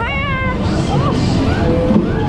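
A high, wavering voice held for about half a second and sliding down in pitch, over the loud steady din of a dodgem ride.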